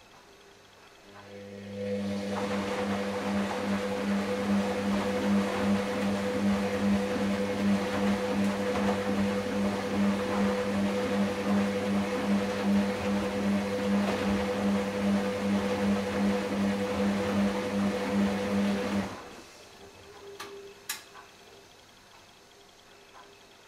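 Hoover DynamicNext DXA 48W3 washing machine humming steadily with water rushing through it, as a pump or valve works during the Baby 40°C wash; it starts about a second in, stops suddenly near the end, and a short click follows.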